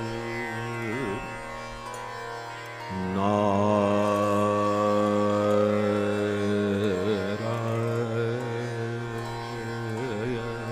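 Hindustani khyal singing in raga Darbari Kanada: a male voice in a slow alap over a steady tanpura drone and harmonium, without tabla strokes. The voice wavers about a second in, moves to a louder long-held note just before three seconds, and wavers again around seven seconds.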